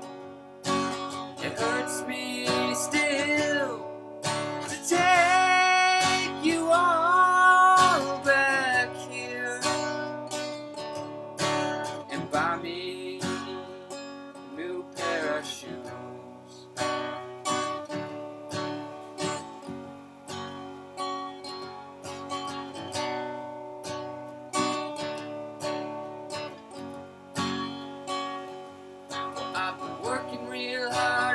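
Steel-string acoustic guitar strummed in a steady rhythm, with a man singing over it. The singing is loudest in the first several seconds and comes back briefly later on.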